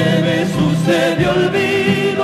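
Argentine folk vocal group singing held notes in harmony over a steady low accompaniment, the voices wavering with vibrato.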